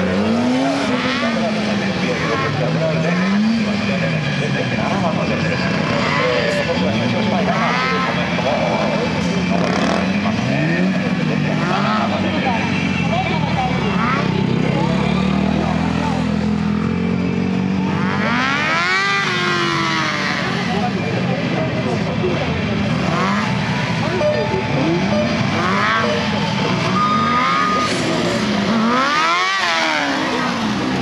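2006 Honda CBR600RR's inline-four engine revving up and dropping back again and again as the bike accelerates and brakes between tight turns, with one longer, higher climb about two-thirds of the way through.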